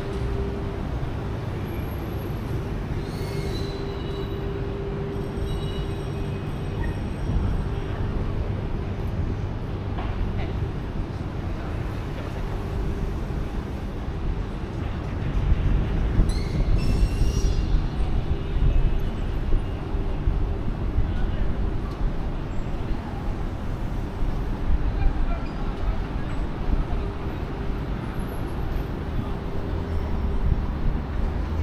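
City street traffic: a steady rumble of passing vehicles and scooters under a constant hum, growing louder from about halfway through as heavier traffic passes.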